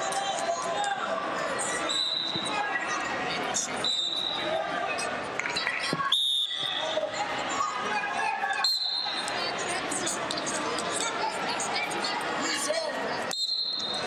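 Wrestling referee's whistle blown sharply about six seconds in to start the bout, with other short whistles from around the hall before and after it. Echoing voices and scattered thuds from the mats fill the large hall throughout.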